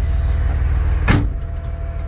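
Freightliner truck's diesel engine idling, heard from inside the cab, with a faint steady whine over it. About a second in comes one short, sharp burst as the parking brake is released.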